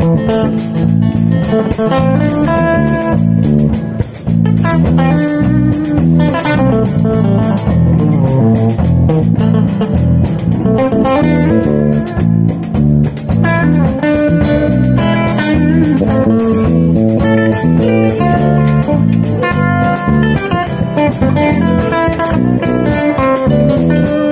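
Live band playing an instrumental: electric guitar lines over a bass guitar and a drum kit with steady cymbal strokes.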